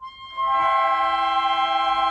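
Student wind ensemble holding a sustained chord of several steady notes. It comes in about half a second in after a brief silent break and is held evenly.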